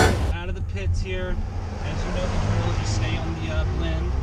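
Steady low drone of a Bentley Bentayga's twin-turbo W12 engine and tyres heard from inside the cabin as it drives onto the track, with a man talking over it.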